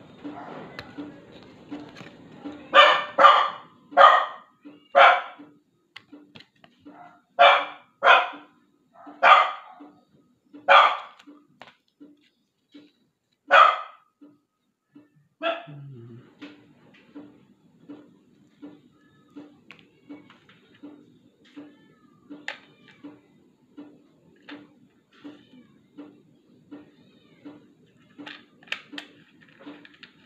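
A dog barking about ten times, singly and in quick pairs, through the first half, then falling silent.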